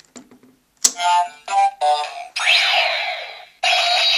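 Fourze Driver toy belt's speaker playing its generic cross-socket sound effect as the Hand Switch is flipped on: a click about a second in, a run of electronic beeps, then a rising whooshing sweep into a sustained tone. It is the default sound the belt gives any gashapon switch, not a sound of the switch's own.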